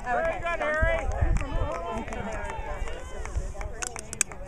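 Indistinct sideline chatter: several spectators' voices talking over one another, with no words clear enough to make out.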